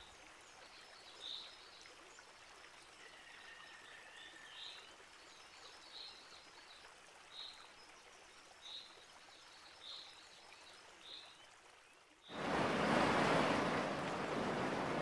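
Faint, short bird chirps repeating about every second and a half over a quiet background hiss. About twelve seconds in, the steady noise of sea surf washing on a beach comes in suddenly and louder.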